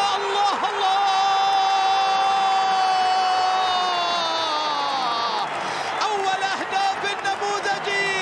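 Arabic football commentator's long, held goal shout: one sustained high note of about five seconds that sinks in pitch near the end, then more excited calling, over a cheering stadium crowd.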